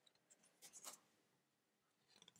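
Faint brush and slide of thick cardboardy tarot cards as one card is moved from the front of the hand-held deck to the back, a short rustle a little over half a second in; otherwise near silence.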